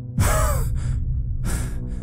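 A startled gasp on waking from a nightmare: a sharp, breathy intake of breath with a falling pitch, followed by a second shorter breath about a second and a half in, over a low music drone.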